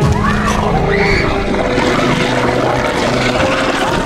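Several teenagers screaming and crying out in terror at once, their overlapping wails rising and falling, over a loud low rumbling drone from the soundtrack.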